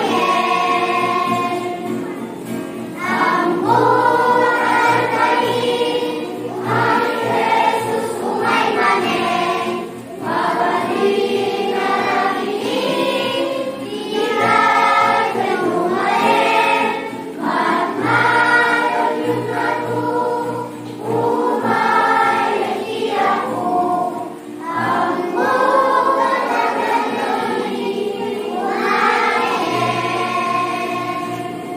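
Church choir of children and teenagers singing together in sustained phrases, with brief dips for breath between lines.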